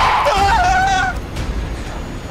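A high, wavering shriek about a second long over a low rumble, a distorted cry in horror sound design.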